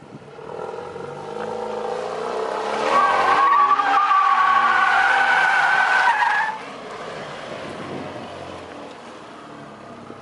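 Alfa Romeo Giulia's turbocharged four-cylinder engine revving as the car spins its rear tyres in a donut with traction control switched off. The tyres squeal loudly from about three seconds in and stop suddenly about six and a half seconds in, leaving the engine running more quietly.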